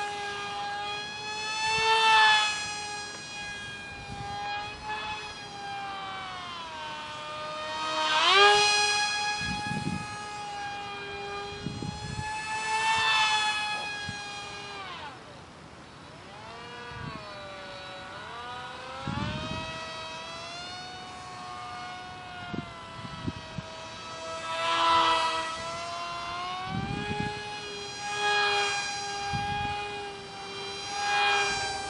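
High-pitched whine of a micro RC delta wing's tiny 8 mm motor spinning a direct-drive propeller in flight. The pitch glides up and down and the whine swells louder several times. The pitch dips low for a few seconds around the middle before climbing back.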